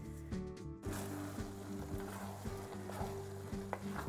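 Fried paneer and thickened sauce sizzling in a hot pan; the hiss starts about a second in, with a few light clicks, over steady background music.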